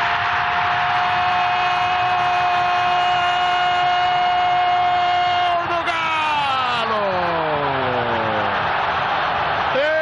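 A TV football commentator's goal cry: one high note held for about six seconds, then a long shout sliding down in pitch over the next three, over a stadium crowd cheering after a penalty is scored.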